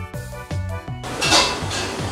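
Background music with a steady beat. About a second in, a ceramic soup spoon clatters in a ramen bowl and spicy soup is slurped noisily from the spoon.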